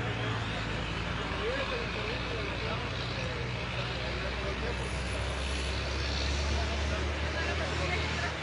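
Idling vehicle engines at a roadside with a steady low hum that drops lower and grows louder about halfway through, over a noisy traffic background.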